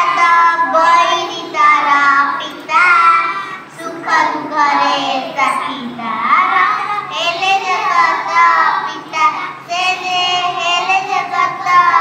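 A group of young girls singing a song together in Odia, with brief pauses between lines.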